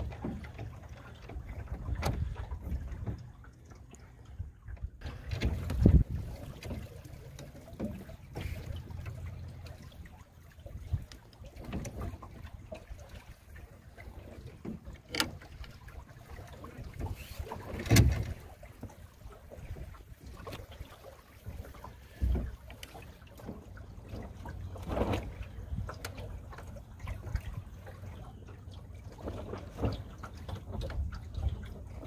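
Small open sailboat under way on choppy water: water slaps and splashes against the hull at irregular intervals, the loudest about six and eighteen seconds in, over a constant low rumble of wind on the microphone.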